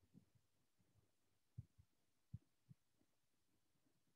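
Near silence, with four faint low thumps between about one and a half and three seconds in.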